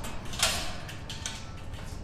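Steel safety pin pushed into the pin hole of a steel hitch cargo carrier's folded gate: a short metal-on-metal scrape about half a second in, followed by a few faint light clicks.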